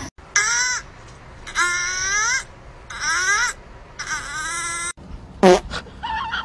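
A kitten meowing: four drawn-out meows, then a shorter, louder one sliding down in pitch about five and a half seconds in.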